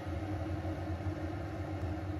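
Electric kettle heating water, a steady rumble with a low hum as it nears the boil.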